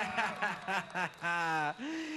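A man's voice making short wordless exclamations, with one drawn-out sound in the second half.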